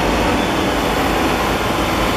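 Self-propelled crop sprayer's diesel engine running steadily as the machine drives slowly past close by.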